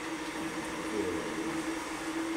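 A steady low hum over a constant hiss, the background noise of a small room.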